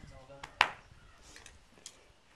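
A single loud, sharp snap about half a second in, followed by a fainter click near the end.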